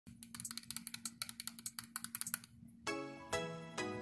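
A metal zipper across a cosplay mask's mouth being slid slowly: a rapid run of small clicks, about ten a second, that stops about two and a half seconds in. Music then starts, with ringing struck notes about every half second.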